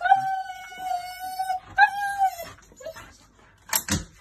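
Husky howling: one long, steady note lasting about a second and a half, then a shorter note that drops in pitch at its end. Near the end come a couple of sharp knocks.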